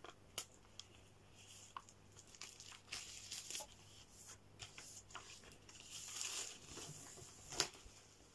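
Faint rustling of paper and plastic packaging as a vinyl LP's jacket and printed insert are handled. A few light clicks are scattered through it, with a sharper one near the end.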